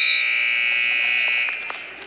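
Arena horn sounding one long, steady, high blast that cuts off about one and a half seconds in, marking the end of the second period of a wrestling bout.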